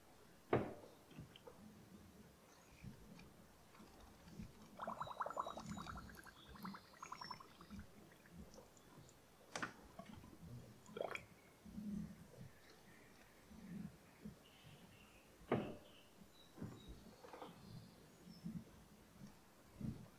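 Faint gurgling and bubbling of fresh power steering fluid in a Mercedes W123's pump reservoir as the steering wheel is worked side to side with the engine off, drawing the fluid through the system and bringing up air. A few sharp clicks and a brief rapid rattle about five seconds in.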